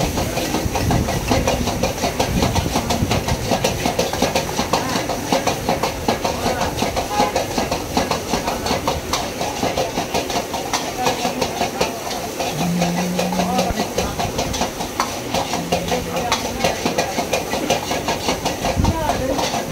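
A steel ladle scraping and clanking rapidly against a wok as rice is stir-fried, over a steady hiss of sizzling and the gas burner's flame.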